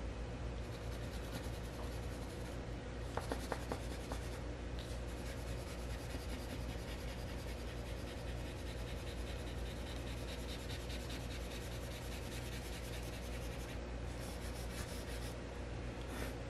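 Black colored pencil (pencil crayon) shading on paper with light, quick back-and-forth strokes: a soft, steady scratching.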